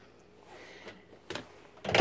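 Quiet handling sounds: faint rustles, then two brief knocks in the second half, the second one louder and right at the end.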